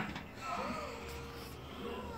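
Faint television audio in the background, a soft gliding tone and a short held note, over a low steady hum.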